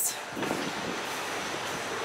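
Steady rushing background noise without speech.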